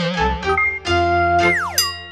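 Short cartoon-style music sting for an animated logo: a wobbling tone, a few stepped notes and a held note, then a quick falling glide with bright chime-like notes about one and a half seconds in, fading out at the end.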